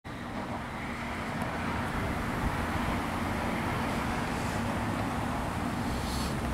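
Steady road traffic noise with a faint low hum underneath.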